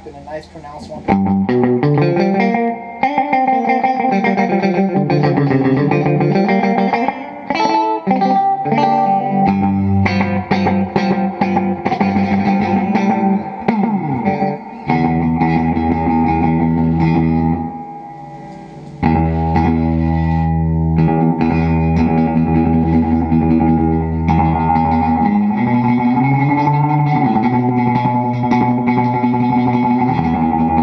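Electric guitar (a Fender Jag-Stang) through an LMP Wells analog delay pedal and a Fender Supersonic amp, playing notes and chords that repeat as echoes. Several times the echoes slide up and down in pitch as the delay time is changed on the pedal.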